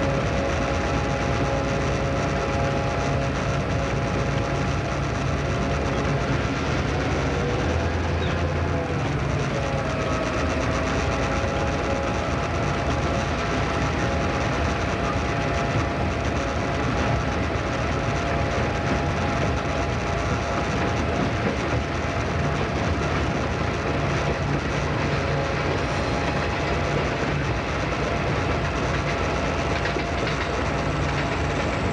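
Diesel locomotive X31 heard from inside its cab while rolling through a yard: the engine runs with a steady drone and the wheels run over the track and points. A few engine tones waver in pitch about eight to ten seconds in.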